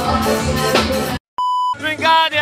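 Live forró band music with electric bass cuts off abruptly about a second in. After a brief silence, one short steady electronic beep sounds, then a voice starts over music near the end.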